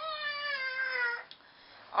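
A young child's high-pitched, drawn-out whining cry, about a second long and falling slightly in pitch at the end.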